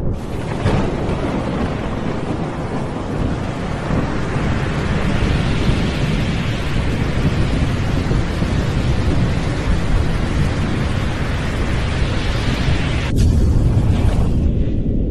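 Loud, continuous thunder-and-rain sound effect: a deep rolling rumble under a steady hiss like heavy rain. It thins briefly, then swells into a heavier rumble near the end.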